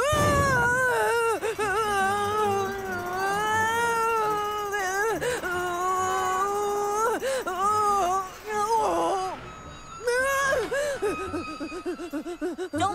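A cartoon boy's long, wavering wail of fright, held for about nine seconds with a few brief catches in the voice, then taken up again after a short pause near the end.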